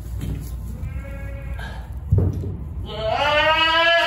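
Saanen doe bleating while straining in labor as her kid is pulled out: a short faint bleat about a second in, then one long, loud bleat starting about three seconds in. A dull thump just after two seconds.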